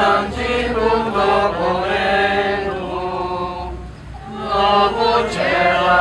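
Congregation of worshippers singing a slow liturgical chant together, with a brief break about four seconds in.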